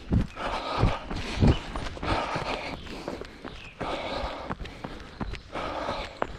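A runner's footfalls on a dirt forest path covered with dry leaves, at a slow jog, with the runner's hard breathing rising and falling between the steps.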